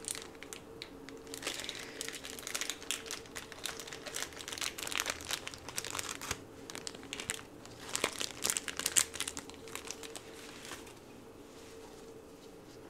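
Close-up crinkling and crackling as nitrile-gloved hands handle plastic, a dense run of sharp crackles that dies down about eleven seconds in.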